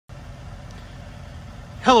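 A steady low rumble, then a man's voice begins near the end.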